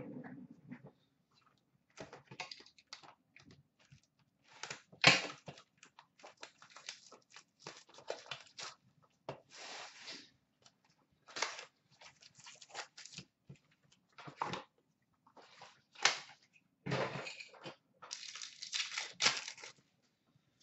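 Hands tearing open a cardboard box of trading cards and ripping open the card packs: a run of short tearing, crinkling and tapping sounds, the loudest a sharp snap about five seconds in, with a denser stretch of rustling near the end.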